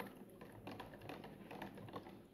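Faint, irregular light clicks and taps of a stick stirring a thick solution of shellac flakes in red methylated spirit, knocking against the sides of a cut-down plastic container.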